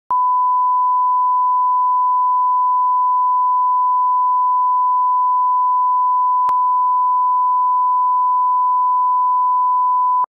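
A 1 kHz broadcast line-up tone: one steady, unchanging pitch, loud and continuous, with a faint click about six and a half seconds in.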